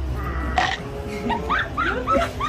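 High-pitched laughter starting about a second in, a quick run of short rising-and-falling peals, after a steady hum cuts off suddenly half a second in.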